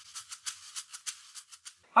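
Rhythmic shaker percussion of a short intro sting, about six or seven crisp shakes a second, thinning out near the end.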